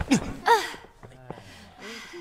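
Short effortful cries and gasps from judo sparring partners as they grapple, with one sharp high-pitched shout about half a second in and a softer one near the end. A brief thud comes at the very start.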